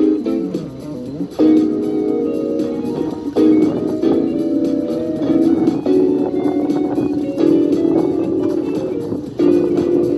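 Acoustic guitar being strummed, chords changing every couple of seconds, with a brief softer passage about a second in.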